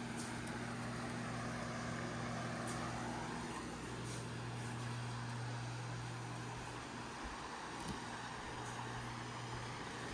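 Steady low electrical hum under an even airy hiss, the indoor room tone of a home's running appliances; the hum drops away near the end.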